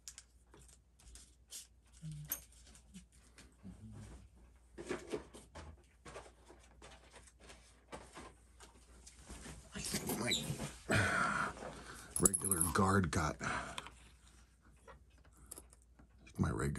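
Scattered small clicks and taps of tools and parts being handled on a workbench, then from about ten seconds in a louder crinkling rustle of a clear plastic zip-lock bag, for about four seconds.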